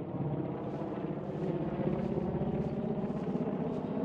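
Helicopter flying overhead, its rotor beating in a fast, steady chop that swells slightly at first and then holds level.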